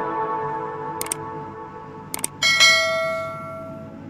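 Subscribe-button animation sound effect: a couple of mouse clicks, then a bright bell ding that rings out and fades, over quiet background music.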